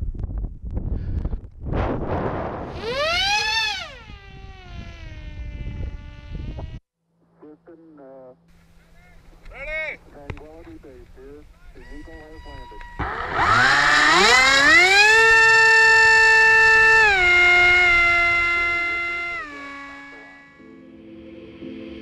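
Electric motor and propeller of an FPV flying wing with wind rushing over the onboard camera: a whine rises and falls during a low pass. After a cut, the motor spools up for a hand launch to a steady high whine, then steps down and fades.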